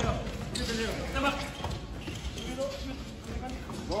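Basketball practice on an indoor court: a ball bouncing amid players' voices and calls across the hall.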